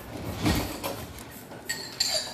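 Kitchen handling sounds while cheese is put on a pizza: a soft thump about half a second in, then a few light clicks and scrapes of a utensil and packaging on the counter.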